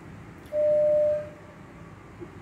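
Electronic beep: a single steady, mid-pitched tone lasting under a second, starting about half a second in and dying away quickly, over a faint steady hum.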